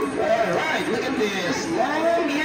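Party audience of children and adults chattering, many voices talking over one another in a large hall.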